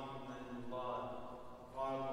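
A priest's voice chanting a liturgical prayer of the Mass, in long held and slowly sliding notes.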